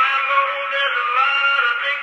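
A country song played back acoustically through an Edison cylinder phonograph's horn from a 120 rpm cylinder recording. The sound is thin and narrow, with no bass and little treble.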